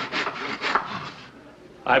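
Hand saw cutting a Christmas tree branch: quick back-and-forth strokes, about four a second, that stop a little over a second in.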